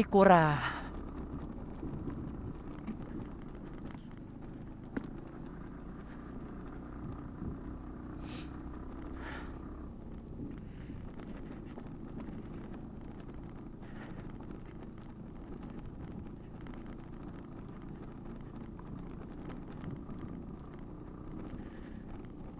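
Motorcycle riding slowly over a rough, stony road: a steady low engine and road rumble. A loud voice calls out once with a falling pitch right at the start.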